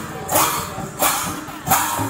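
Large brass hand cymbals of a Sambalpuri kirtan band clashing in a steady beat, three ringing clashes about two-thirds of a second apart, with barrel drums playing along.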